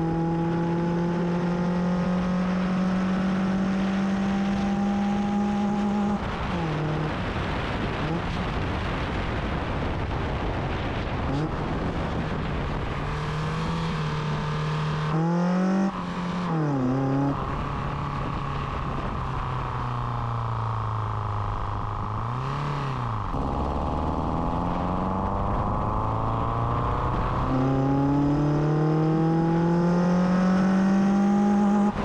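Toyota Starlet four-cylinder engine breathing through individual throttle bodies under load on the road. The revs climb for the first six seconds, then drop abruptly. They rise and fall again around the middle, sag until about 23 seconds in, then climb steadily to the end.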